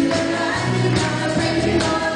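Live church praise band playing an upbeat worship song: singers over a drum kit and guitar, with a steady beat.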